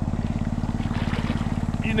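A small engine running steadily with a rapid, even pulse.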